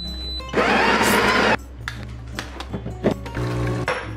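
An espresso machine's built-in grinder running in one loud burst of about a second, over background music.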